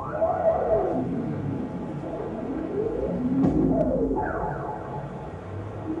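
Live experimental electronic music: several sliding tones swoop up and down in pitch and overlap, over a low rumbling drone. The sound is made on tabletop electronics, effects boxes and a small mixer.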